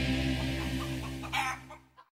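The last held chord of an intro music track fading out, with a chicken clucking a few times over it. The clearest cluck comes about a second and a half in.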